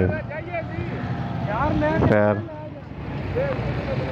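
Background talk from several people, with one voice clearer about two seconds in, over a steady low rumble.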